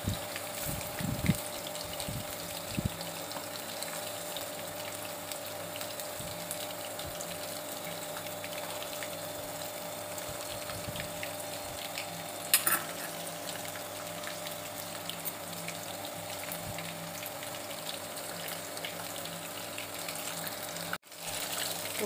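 Chicken pakoda pieces deep-frying in hot oil: a steady sizzling hiss, with one sharp crackle about midway and a brief break near the end.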